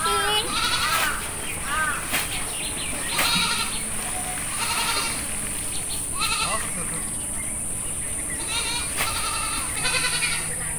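Repeated short animal calls, each one rising and falling in pitch, coming every second or so and thinning out for a moment past the middle, over a steady high-pitched hiss.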